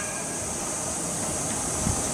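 Low, steady rumble of a distant electric train on the Joban Line tracks, under a steady high-pitched hiss.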